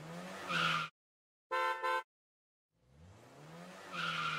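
Cartoon car sound effects: an engine revving up in pitch, a short horn toot about a second and a half in, then another rising engine rev near the end.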